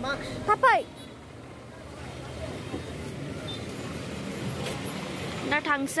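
Steady street traffic noise, a low even rumble of vehicle engines, between a voice briefly at the start and again near the end.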